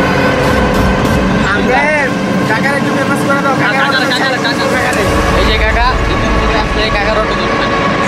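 An open three-wheeler auto-rickshaw running along a road, its steady motor and road noise heard from on board under people's voices.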